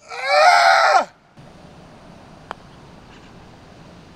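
A man's loud shout, about a second long and falling in pitch, reacting to a putt. Then a faint steady outdoor background with a single sharp click about two and a half seconds in.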